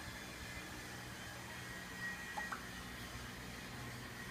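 Quiet room tone with a steady low hum, broken once about halfway through by a faint, short two-note blip, the second note higher.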